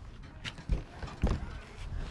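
A few irregular knocks and low thumps as a clear plastic storage bin full of toys is picked up and jostled.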